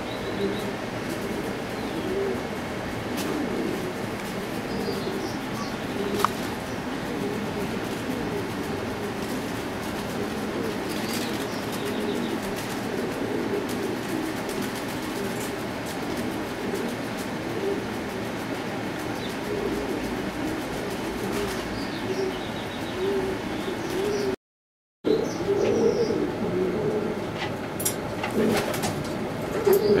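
Many domestic buchón pouter pigeons in a loft cooing continuously, their overlapping low coos running on without a break.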